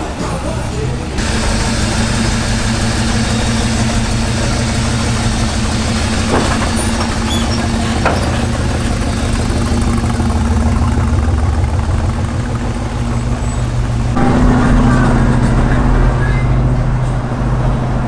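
A car engine running steadily close by, with a low even drone whose pitch and level shift up about fourteen seconds in.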